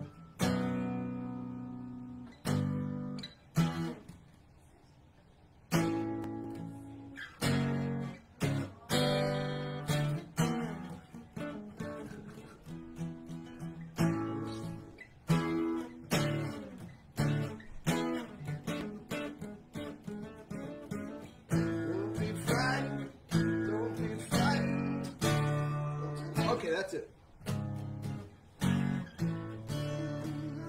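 Acoustic guitar strummed chord by chord, each chord left to ring out, with a pause of a couple of seconds a few seconds in. The player is working out how the song goes.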